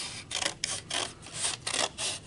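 Scissors cutting through folded light cardstock, a quick run of crisp snips, about four to five a second.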